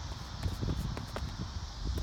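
Wind buffeting a phone microphone as a steady low rumble, with a few faint ticks mixed in.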